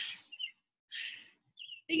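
A short breathy exhale into the microphone from a person exercising, set between two faint, brief high chirps.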